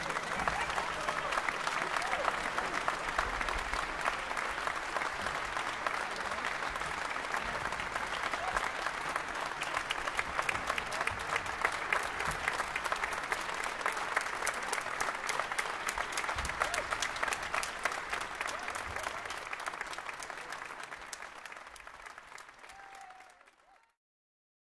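Large audience applauding steadily with dense clapping, which thins and fades over the last few seconds before cutting off just before the end.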